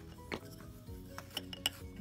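Bamboo knitting needles clicking against each other several times as stitches are worked, over soft background music.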